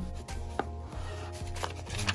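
Background music with a steady bass line, with a few light knocks and taps from cardboard packaging and printed cards being handled and set down.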